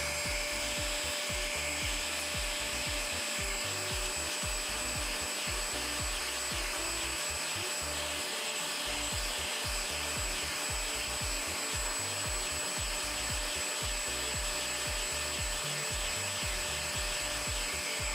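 Anko spot cleaner's motor running with a steady whine while its scrub-brush head is worked back and forth over looped carpet, the bristles rasping against the pile.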